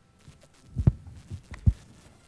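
Muffled low thumps picked up by a desk microphone: two louder ones a little under a second apart, with a few fainter knocks around them.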